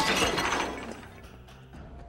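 The tail of a shattering crash, dying away over about a second, with music underneath.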